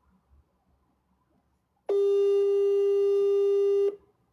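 A single loud, steady electronic beep tone, one held pitch with overtones, starting about two seconds in and lasting about two seconds before cutting off abruptly.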